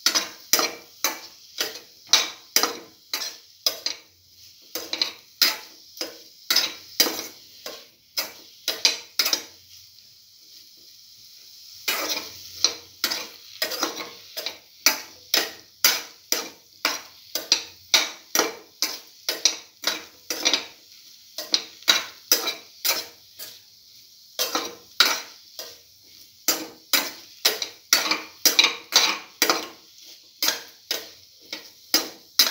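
A spatula scraping and stirring through pieces of cottage cheese, eggplant and green chili sautéing in a pan, in quick regular strokes about two a second. The stirring stops for about two seconds roughly ten seconds in, and briefly again later.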